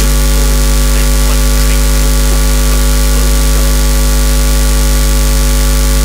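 Loud, steady electrical hum and hiss: a deep drone with several fixed tones above it and an even hiss over it, cutting off suddenly near the end.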